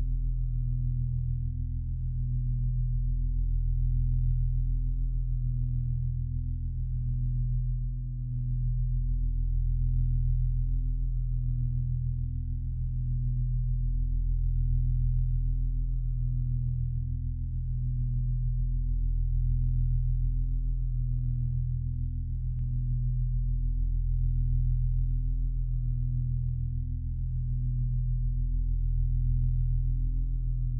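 Ambient drone music: low, steady humming tones that swell and fade slowly every few seconds, with a faint pulsing underneath.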